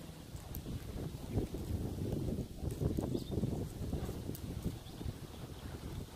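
Tiger lapping water at the edge of a pool: a steady run of soft, irregular wet laps.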